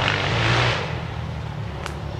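Motorbike engines running as the bikes pass nearby. The sound is loud at first, then drops away a little under a second in.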